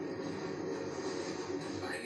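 Street luge rolling fast down a road: a steady rushing rumble.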